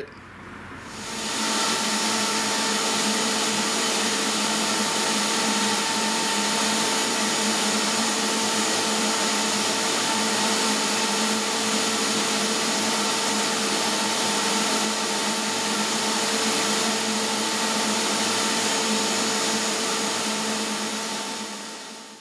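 A CNC router spindle and a shop vacuum drawing through the dust boot, running steadily after spinning up over about the first second and a half, with a steady motor whine.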